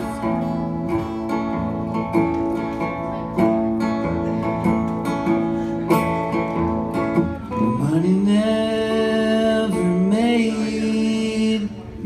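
Acoustic guitars strumming chords in a country song; about eight seconds in a voice comes in singing a long held note that slides up into it and wavers.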